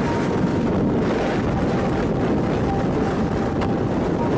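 Strong wind from a nearby tornado rushing and buffeting the microphone of a car, a steady deep rumble with a faint high tone that comes and goes.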